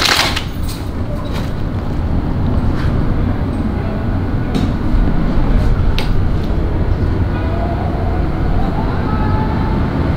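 A steady, loud low rumbling noise with a few faint clicks.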